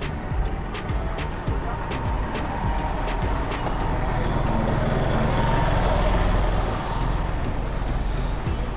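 Steady low traffic rumble of a street, under quiet background music, with a quick run of small clicks in the first couple of seconds.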